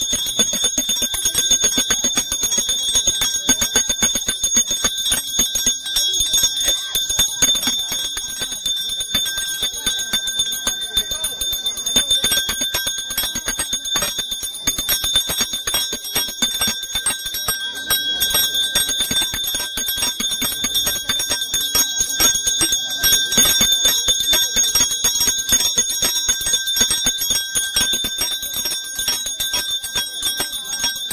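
Brass hand bell rung rapidly and without pause for a puja, its clapper striking many times a second over a steady high ring.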